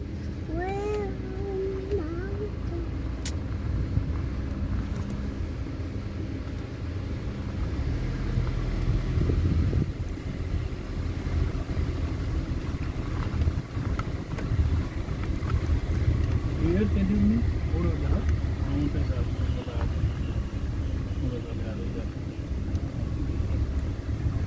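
Steady low rumble of a safari vehicle driving along a forest track, engine and road noise. Brief voices come in near the start and again about two-thirds of the way through.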